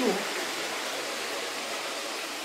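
Water falling in a flooded iron-mine gallery, a steady hiss: mine water rising out of the flooded galleries, running low for lack of rain.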